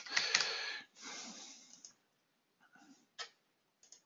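A short noisy rush that fades away over the first two seconds, then a few faint computer keyboard and mouse clicks, the sharpest a single mouse click about three seconds in.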